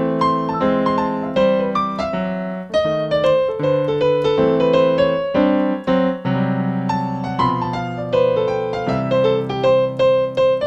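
Yamaha digital piano playing an instrumental swing break: quick right-hand runs of struck notes over steady left-hand chords.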